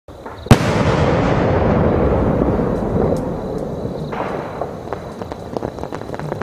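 A large 5-inch aerial firework shell (Golden Rain) bursting with a sharp bang about half a second in, followed by a dense crackling rush that slowly fades as the golden trails fall. A second, weaker burst comes about four seconds in, then scattered pops.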